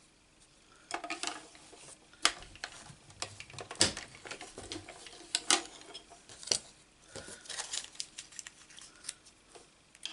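Plastic die-cutting plates, a thin metal cutting die and die-cut card pieces being handled and set down on a craft mat: irregular sharp clicks and taps with light rustling, starting about a second in.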